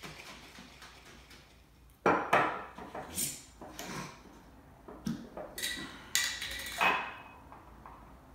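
Metal screw lid being worked off a glass mason jar: a string of sharp, irregular clinks and knocks of metal on glass, some with a brief ring, starting about two seconds in and lasting about five seconds.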